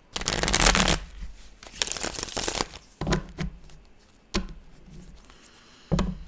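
A deck of tarot cards shuffled by hand: two rustling, riffling runs of about a second each, followed by three single sharp clacks of the cards spaced over the next few seconds.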